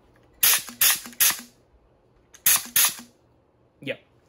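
A 3D-printed semi-automatic HPA (high-pressure air) foam blaster firing five sharp blasts of compressed air: three quick shots about half a second in, then two more a little after two seconds. One of its internal airlines has popped off, which the builder confirms right after the shots.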